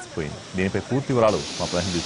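A man's voice talking in Telugu, with a steady high hiss joining in under it a little past halfway.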